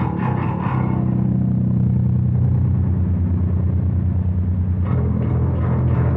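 Schecter Omen 5 five-string electric bass being played: a few quick plucked notes, then a low note held for about four seconds as its treble fades, and a fresh note struck near the end.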